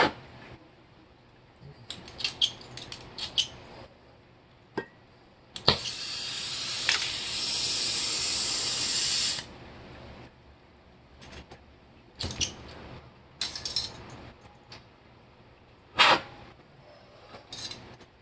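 Gas hissing steadily from an oxygen and MAP-Pro fuel torch for about four seconds, starting abruptly with a knock and cutting off suddenly. Scattered light clicks and knocks of handling come before and after.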